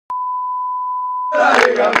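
A steady test-tone beep accompanying colour bars, cut off after about a second and a half by a group of men shouting in celebration, with sharp hand claps.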